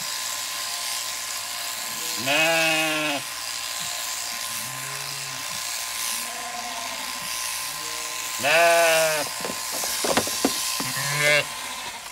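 Zwartbles sheep bleating loudly three times, about two seconds in, past eight seconds and briefly near the end, with fainter, lower calls between, over the steady buzz of electric sheep shears running.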